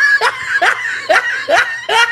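Laughter in short, evenly spaced rising notes, about two a second.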